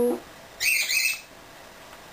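A pet bird gives one short, high, harsh call in two quick parts about half a second in.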